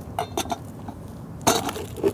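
A dark metal cooking pot and its lid being handled: a couple of light clinks, then a louder knock about one and a half seconds in.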